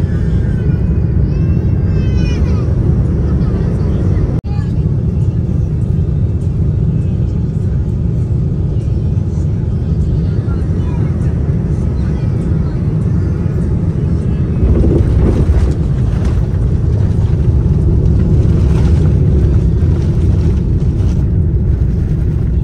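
Jet airliner cabin noise heard from a seat over the wing: a loud, steady rumble of engines and airflow through the descent and the landing roll on the runway. It breaks off abruptly about four seconds in and grows louder from about fifteen seconds. A high, wavering voice-like sound rises over it in the first two seconds.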